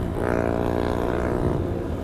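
Motorcycle engine running while riding at road speed, its note dipping slightly at the start and then holding steady.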